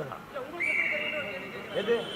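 Men's voices talking over one another in a close crowd, with a high, steady whistle-like tone coming in about half a second in and stepping up in pitch near the end.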